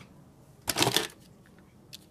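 Loose metal diecast toy cars clattering against each other in a cardboard box as a hand rummages through them: a brief rattle just under a second in, with single light clicks at the start and near the end.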